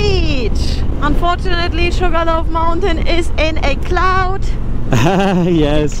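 A person's voice over the steady low rumble of wind and engine noise from a moving motorcycle.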